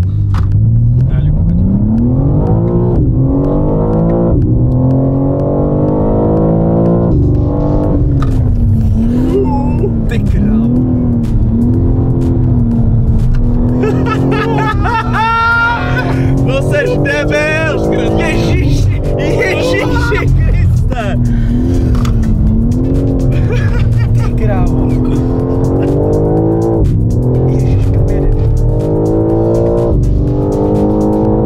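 BMW M4 Competition's twin-turbo straight-six pulling hard on track, heard from inside the cabin. The revs climb over the first few seconds, then rise and fall again and again with gear changes and corners. Passengers whoop and laugh around the middle.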